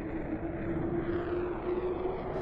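Spacecraft engine sound effect: a steady drone with a low, even hum running through it.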